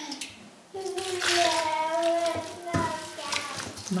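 Warm water poured from a bowl onto flour in a steel mixing bowl, running for about two seconds, with a knock near the end.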